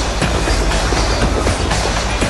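Loud, steady city street noise: a heavy low rumble with a dense wash of clattering.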